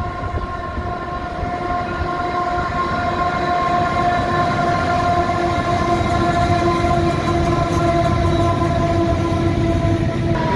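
Diesel locomotives hauling a loaded coal train pass at close range. The low rumble grows louder over the first few seconds, then holds steady as the hopper wagons roll by, with a steady high-pitched tone running through it.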